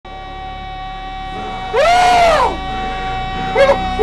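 A man's excited wordless shout that rises and falls in pitch, about two seconds in, followed by a shorter yelp near the end. A steady held tone sounds underneath throughout.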